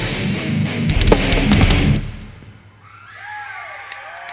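Live progressive metal band playing distorted guitars and drums, then cutting off about halfway through into a quieter pause in which a few tones glide up and back down.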